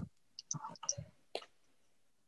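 A few faint, sharp clicks and small handling noises on an open video-call microphone, with a brief faint murmur of voice in the first second.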